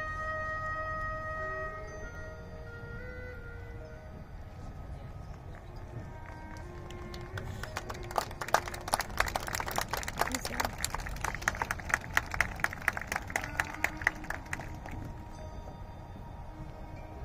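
Marching band winds holding chords that fade to soft sustained notes. From about eight seconds in, a run of sharp percussion strikes comes in, several a second, lasting about seven seconds before the band drops back to soft held tones.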